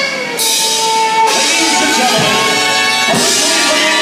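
Polka orchestra playing a dance number live, with saxophone, horns and drum kit.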